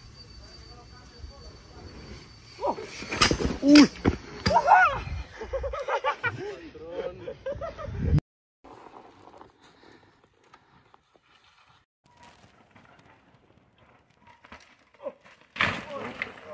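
People calling out, with a few sharp knocks about three to four seconds in. About eight seconds in the sound cuts off abruptly to a faint, quiet stretch.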